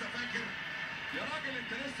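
Arabic football commentary playing from a television: a male commentator talking over the match.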